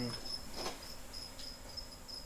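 A cricket chirping steadily in short, high-pitched pulses, with a brief rustle of handling about half a second in.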